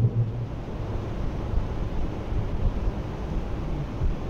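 Steady low rumbling noise with no voice or tune in it.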